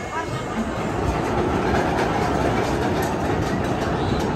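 Twisted Colossus roller coaster train rolling out of the station, a steady rumble of its wheels on the track that grows a little louder about a second in.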